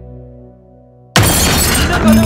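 Soft, sad background music fades out, then about a second in a sudden loud crash sound effect bursts in over the cut, dense and hissing, like breaking glass.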